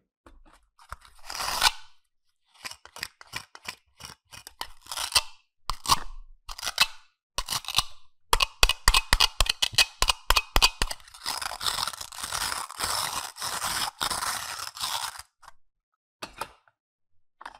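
Hard plastic toys handled by hand: scattered clicks and taps as a toy lemon is picked up and pulled apart into its two halves, with a quick run of clicks about eight seconds in and a longer scratchy rubbing near the end.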